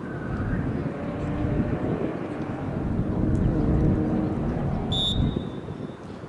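A steady low rumble with faint distant voices, then a single referee's whistle blast about five seconds in, lasting about a second.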